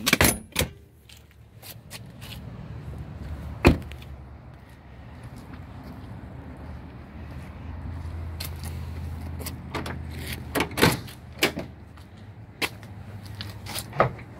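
A pickup's rear door shutting with one loud slam about four seconds in, then a scatter of small clicks and knocks as the tailgate area is handled, over a low steady hum.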